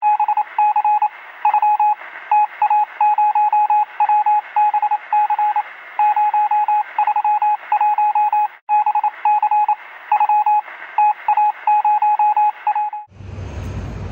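Morse code: one steady beeping tone keyed in runs of short and long beeps over a hiss of radio static, all with a thin, narrow radio sound. The keying breaks off for a moment about two-thirds of the way through and stops shortly before the end.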